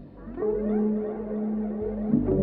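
Electronic synthesizer sounds: held steady tones with rising, sliding notes over them, much like whale calls. They come in about half a second in, after a brief dip.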